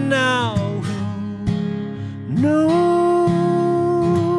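A man singing to his own acoustic guitar: a sung phrase that falls away in the first second, then one long held note from a little past halfway, over the steady sound of the guitar.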